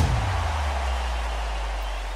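Podcast break transition sound: a hissing wash that slowly fades, over a low hum that sinks slightly in pitch.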